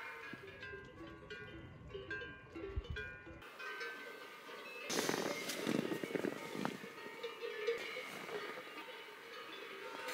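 Cowbells on cows grazing very close by, clanking irregularly for the first three seconds or so, over soft background music. After that, a rustling noise.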